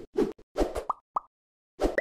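Animated-logo sound effects: a quick run of short pops and thuds, several with a brief pitched blip, pausing for about half a second before two more near the end.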